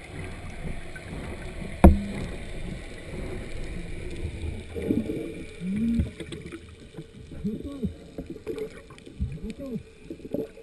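Muffled underwater sound from a diver's camera: a steady low rumble, a single sharp knock about two seconds in, then from about halfway a string of short, muffled groans from the diver that rise and fall in pitch.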